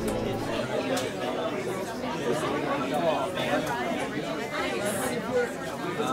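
Background chatter: several people talking at once in a room, with no words clear.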